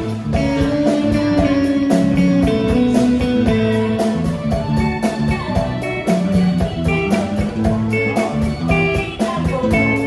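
Live band playing: a drum kit keeps a steady beat under electric guitar and other held instrument notes.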